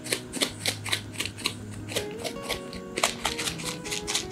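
Small plastic shaker of black salt shaken by hand in a quick, even rattle, about five shakes a second, over background music.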